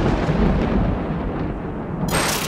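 Cinematic logo-reveal sound effect: the deep, thunder-like rumbling tail of a heavy boom, slowly fading.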